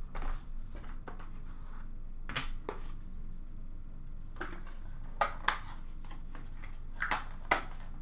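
Hands handling a cardboard box of trading cards and the cards themselves: scattered soft rustles, slides and light taps at irregular moments, with short pauses between them.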